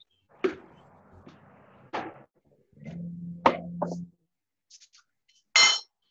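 A few knocks and clatters of objects being handled, with a brief low hum in the middle, ending in a short ringing clink.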